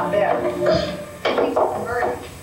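A film soundtrack: voice and music sounds, then a sudden clatter a little over a second in.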